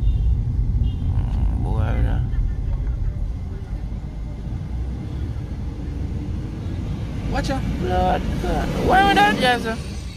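Low, steady rumble of a car's engine and tyres heard from inside the cabin while it drives slowly in town traffic. Voices speak briefly about two seconds in and again, louder, near the end.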